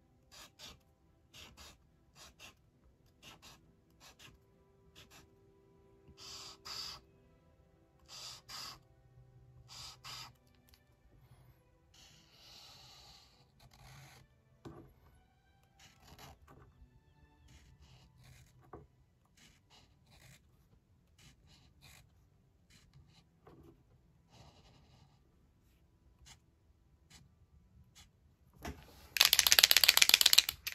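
Uni Posca paint marker drawing short strokes on sketchbook paper, a faint scratch with each stroke; the marker is running dry. Near the end there is a louder rustle of the pen and paper being handled.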